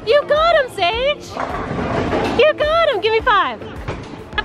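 A young child's high-pitched excited squeals and wordless shouts in two bursts, with a brief stretch of noise between them.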